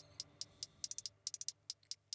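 Faint, quick, high-pitched ticks at uneven spacing, some bunched into fast little runs.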